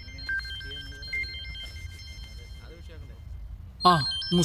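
Mobile phone ringtone playing a simple melody of electronic tones that step up and down between a few high pitches, with faint voices underneath.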